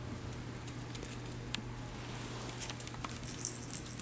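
Faint scattered clicks and pattering of puppies' claws and paws on a tile floor, over a steady low hum.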